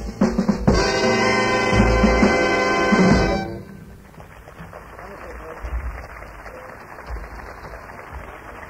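A live swing jazz band's horn section holds a final chord over drums, ending the tune and cutting off about three and a half seconds in. A low, even background noise of the live recording follows.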